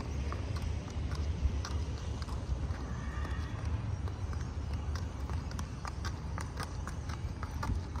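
A Thoroughbred horse's hooves clopping at a walk on packed gravel, irregular light footfalls, over a low steady rumble.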